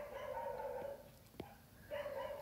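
A faint, steady animal call lasting about a second, followed by a single sharp click.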